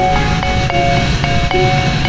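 Background music: a melody of held notes stepping from pitch to pitch every third to half second, over a busy low bass.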